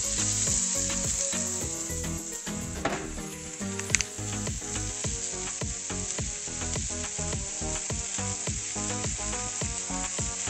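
Burger patties and sliced onions, peppers and jalapeños sizzling steadily in frying pans, with a couple of sharp ticks about three and four seconds in.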